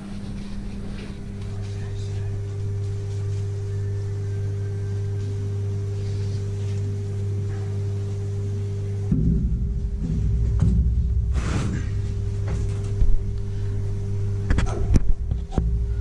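Steady low electrical hum from equipment in the shed. About nine seconds in it is joined by rustling and handling noise with a few sharp knocks.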